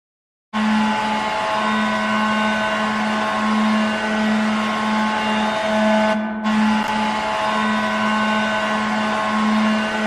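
Hockey goal horn blowing one long, steady, loud blast that starts about half a second in, briefly dipping just past six seconds before carrying on.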